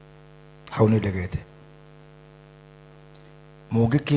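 Steady electrical mains hum through the sound system, with a man's voice over the microphone in two short bursts, about a second in and just before the end.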